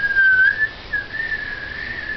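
A young girl whistling two long notes, the first gently wavering, the second a little higher and held steady for longer.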